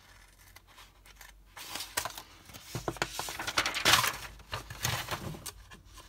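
Crinkling and rustling of a plastic acetate window sheet being handled, with many small crackles. It starts about a second and a half in, is loudest near the middle and dies down toward the end.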